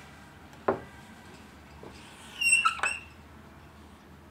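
Marker squeaking against a whiteboard in a few short, high-pitched strokes a little past halfway, with a fainter stroke sound earlier.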